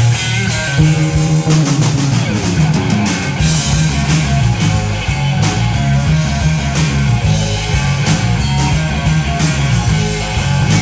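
Live Texas blues-rock trio playing an instrumental passage: electric guitar over bass guitar lines and a drum kit with cymbals, steady and loud throughout.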